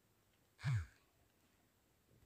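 A single short breathy sigh, its pitch falling, about two-thirds of a second in; otherwise near silence.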